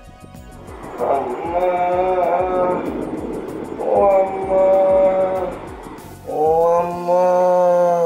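A man's three long, drawn-out groans, each held for a second or two with short gaps between, over background music with a steady beat.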